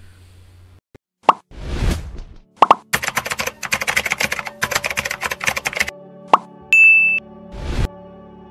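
Animated outro sound effects: a couple of pops and a whoosh, then about three seconds of rapid keyboard-typing clicks over background music, a single click, a short high beep and a closing whoosh.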